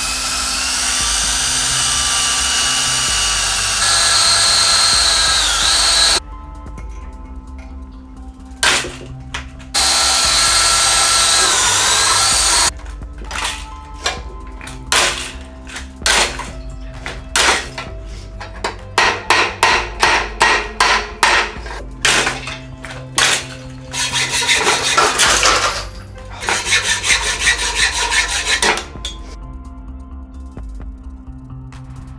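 Electric drill boring through thick steel plate, running steadily and sagging in pitch as the bit bites, twice. After that comes a long run of short, sharp strokes of hand work on the metal, coming faster and closer together near the end.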